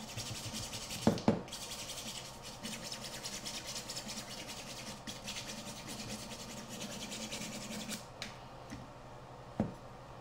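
A nail file sanding a carbon fiber drone frame arm in quick back-and-forth strokes, smoothing down a super-glued delamination repair. There are two sharp knocks about a second in. The filing stops near eight seconds, and one more knock comes shortly before the end.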